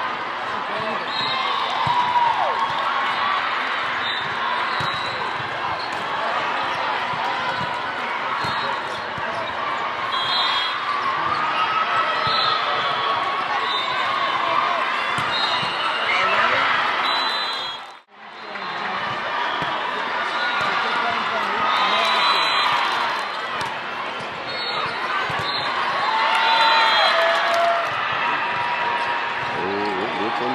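Busy indoor volleyball hall: a steady hubbub of spectators' and players' voices, with volleyballs being struck and bouncing on the court floor. The sound drops out briefly about eighteen seconds in.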